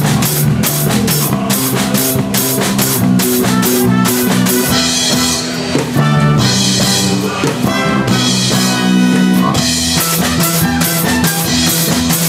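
Live band music: a finger-played electric bass plays a moving line under a drum kit and electric guitar. About five seconds in, the drums thin out for a few seconds under held chords, then the full beat returns.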